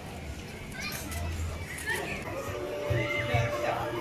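Children shouting and playing, with scattered voices of people around them; a single steady tone is held for about a second in the second half.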